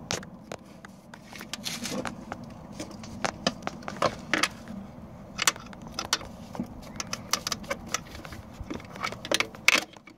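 Irregular small clicks, rattles and scrapes of a small screwdriver and fingers prying at a broken plastic reverse-cable lock on a Sea-Doo jet ski, working the threaded piece loose from its housing.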